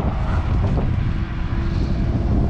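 Wind buffeting the microphone as a loud, uneven low rumble, with a faint steady hum in the second half.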